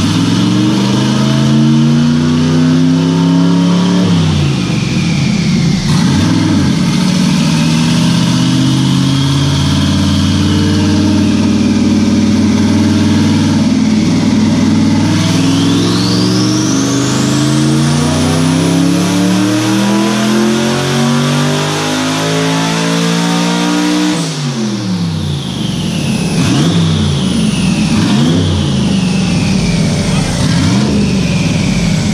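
A twin-turbocharged LSX 427 V8 makes a full-throttle pull on a chassis dyno on about 10 psi of wastegate-spring boost. The engine note climbs steadily for over fifteen seconds, and the turbo whistle rises through the middle of the pull. About three-quarters of the way through the engine lets off: the pitch drops sharply, the turbo whistle falls away, and a few short revs follow.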